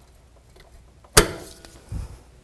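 Steel locking pliers snapping shut onto a suspension link stud: one sharp metallic click with a short ring about a second in, then a softer knock near the end.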